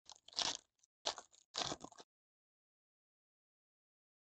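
Foil trading-card pack wrapper crinkling and tearing open, in three short bursts over about two seconds, then silence.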